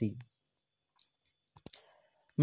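A pause with two or three short, faint clicks about a second and a half in, followed by a soft breathy noise.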